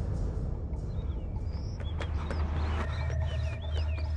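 Outdoor ambience: several short bird chirps over a steady low rumble.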